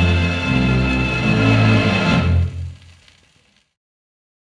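Orchestral music from a 78 rpm shellac record, ending on a held chord that breaks off about two seconds in and dies away within another second and a half.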